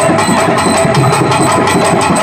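Live stage music for a dance: drums beating a fast, even rhythm over steady held tones.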